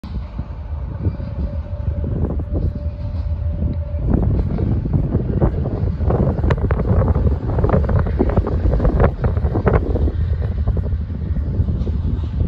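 Diesel-led freight train approaching and rolling past, a low steady rumble, with wind buffeting the microphone. From about four seconds in, the sound grows louder and is broken by many short sharp clicks as the locomotive draws level.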